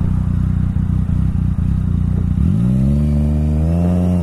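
Yamaha FZ-09's three-cylinder engine idling, then revving as the bike pulls away about two and a half seconds in, its pitch rising and then holding.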